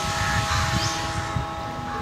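A running engine or motor: a steady low rumble with a steady hum of several tones, getting a little quieter in the second half.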